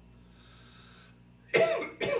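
A man coughing into his hand: a faint breath, then a loud cough near the end.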